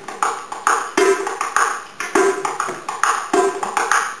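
Darbouka (Middle Eastern goblet drum) played with the fingers alone in a fast, even rhythm: crisp strokes on the skin between ringing tones that recur about once a second.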